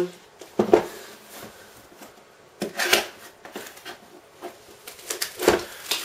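A cardboard motherboard retail box being opened by hand. Three short knocks and rustles of the lid and packaging come about a second in, around three seconds in and near the end, with quiet handling between them.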